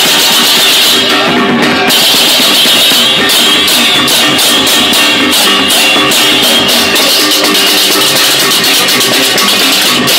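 Balinese baleganjur processional gamelan playing loud and dense: rapid clashing ceng-ceng hand cymbals over drums, the cymbals growing fuller about two seconds in.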